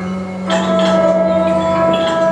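Live improvised music: a steady low drone, then about half a second in a louder held tone with bright overtones enters suddenly and sustains, with scattered higher sounds over it.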